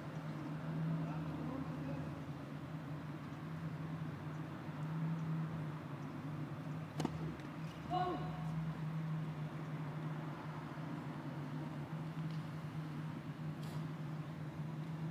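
Quiet outdoor tennis-court ambience under a steady low hum, with a single sharp tap about seven seconds in and a brief voice just after it.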